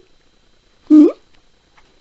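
A single short vocal sound, one note gliding upward in pitch, about a second in.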